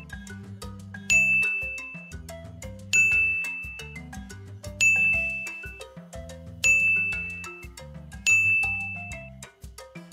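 A bright chime sound effect rings five times, about every two seconds, each note fading out over about a second, one chime for each candy set on the plate. Under it runs light, cheerful background music.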